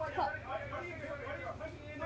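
Speech from a video playing in the background, several voices talking over a low steady hum.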